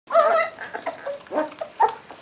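Leonberger puppies squealing and whining while eating meat from a metal bowl: one loud wavering whine at the start, then shorter squeaks, with small clicks of eating between.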